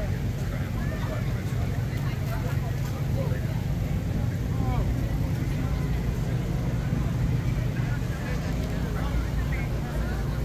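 Food-truck generators running with a steady low hum, under the indistinct chatter of a street crowd.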